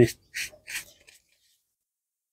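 Small toothbrush scrubbing a rough rock: two short scratchy brush strokes within the first second.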